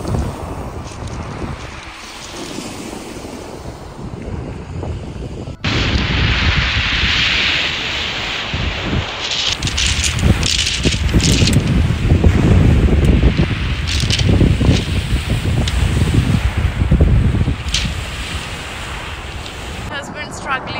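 Small waves breaking and washing over a shingle beach, with wind buffeting the microphone. About five and a half seconds in the sound cuts to a louder, gustier stretch of wind rumble over the surf.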